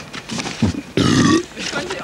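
A man's short, harsh, guttural vocal noise lasting under half a second, about a second in.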